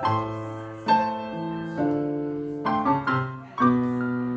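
Electronic keyboard played with a piano sound: slow chords struck about once a second, each ringing on and fading before the next.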